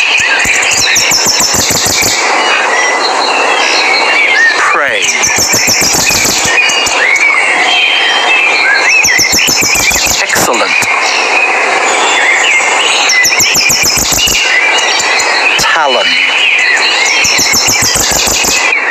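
Eagle calls: high-pitched squealing, chattering notes that come again about every four seconds, over a dense steady background.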